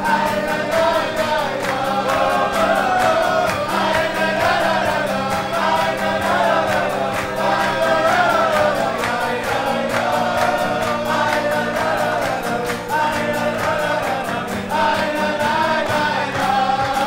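A group of men singing a Chassidic niggun together, with acoustic guitar strumming and hand-clapping keeping a steady beat.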